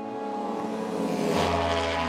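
A racing motorcycle engine mixed with a music score of held chords. About one and a half seconds in, a deep low note and a rushing swell come in.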